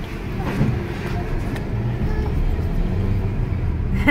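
Low, steady rumble of a car's engine and tyres heard from inside the cabin as the car pulls away at low speed, a little louder in the second half.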